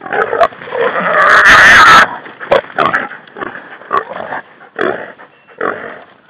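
Feral hog squealing and grunting. A loud, harsh scream lasts about a second starting about a second in, and is followed by a string of short squeals and grunts about every half second.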